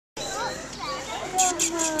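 Children's voices calling and chattering, with one long drawn-out call starting about one and a half seconds in. At the same time there is a quick run of short, high hissing bursts, about five a second.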